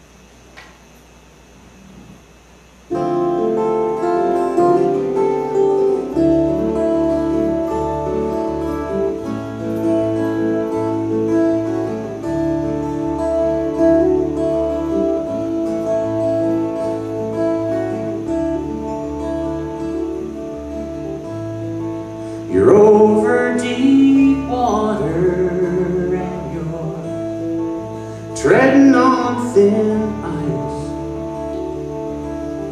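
Two acoustic guitars and a bass guitar start a song's instrumental intro about three seconds in, after a quiet pause. A voice starts singing about two-thirds of the way through, over the guitars.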